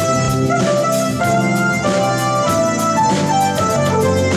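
Live instrumental music: a Korg synthesizer keyboard holding sustained notes and chords over a drum kit keeping a steady beat.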